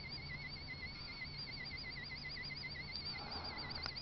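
Faint, thin high electronic whine from the Hall-sensor levitation circuit's electromagnet coil, its pitch warbling up and down, the warble quickening toward the end. A soft hiss comes in during the last second.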